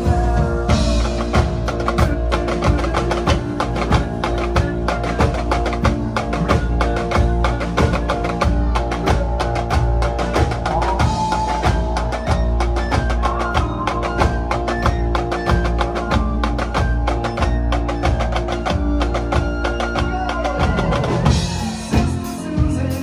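Live rock band playing an instrumental passage, with marching snare drums played close by: dense, rapid snare strokes over held chords.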